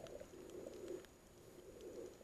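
Faint, muffled underwater sound picked up by a submerged camera: a low hollow murmur that dies away about a second in, leaving near silence.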